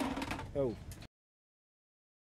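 A man's voice says a short "oh" over outdoor background noise. About a second in, the audio cuts off to dead digital silence at an edit.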